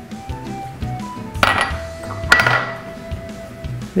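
Background music with two sharp clinks of a utensil against glassware, about a second apart, each with a brief ring.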